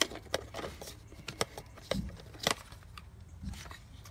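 Plastic case of a Bushnell Trophy Cam HD Aggressor trail camera being handled as its side latch is undone and the front swung open: several sharp, separate clicks and knocks of hard plastic.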